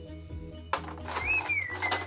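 Background music playing, then about two-thirds of a second in a sudden clatter of plastic lip balm tubes rattling against each other in a clear plastic bowl as it is handled.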